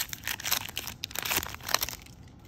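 Foil Magic: The Gathering booster pack wrapper being torn open and crinkled by hand, a quick run of rips and crinkles.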